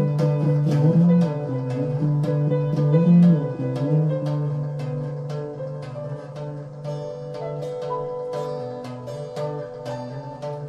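Live instrumental rock jam led by picked guitar notes over a held low note, getting softer after about four seconds.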